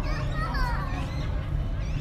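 Young children's high-pitched voices mixed with other people talking nearby, over a steady low rumble.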